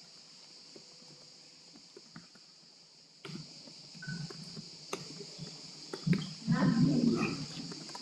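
Quiet hall ambience during a show-of-hands vote. After about three seconds a steady hiss comes up with a few small knocks and clicks, and faint voices murmur briefly near the end.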